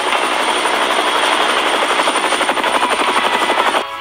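Helicopter rotor sound effect: a loud, steady, rapid chopping that cuts off suddenly near the end.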